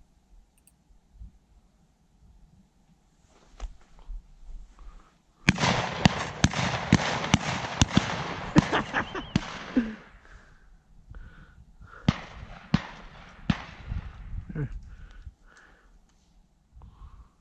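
Many shotguns firing at birds in the air, a rapid barrage of overlapping shots that starts about five seconds in and lasts about four seconds, followed by a handful of scattered single shots.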